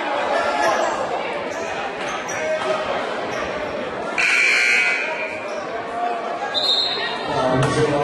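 Gym buzzer sounds once, for under a second, about four seconds in, over voices and chatter echoing in a large hall. A short, higher tone follows near the end.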